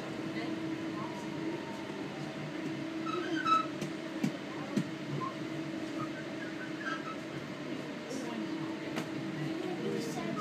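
Inside a Class 323 electric multiple unit on the move: a steady electric traction whine over running noise, with a few sharp knocks from the wheels and track partway through.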